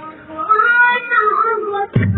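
A woman's high voice sings one drawn-out, wavering line alone while the drums drop out for a moment. The band comes back in with a drum hit at the very end.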